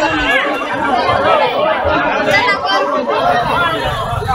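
Several people talking over one another: crowd chatter with many voices at once.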